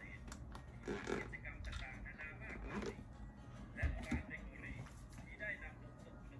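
Dialogue from a Thai TV drama episode playing at low volume, with faint background music under it.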